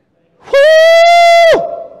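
A loud, high-pitched shouted 'Woo!' held for about a second, ending in a quick drop in pitch.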